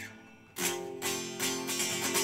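Electric guitar playing a barre chord, strummed about half a second in and again shortly after, the notes ringing out clearly with the strings held down firmly.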